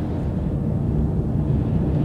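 Steady low rumble of tyre and road noise inside the cabin of a moving Nissan Leaf 40 kWh electric car, with no engine sound, slowly growing a little louder.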